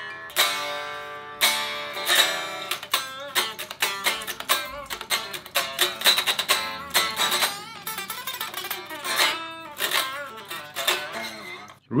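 A Charvel Pro-Mod Relic San Dimas electric guitar played unplugged, so only its acoustic resonance is heard. It starts with ringing strummed chords, moves to quicker single-note lines with bends and vibrato, and ends on a few more chords.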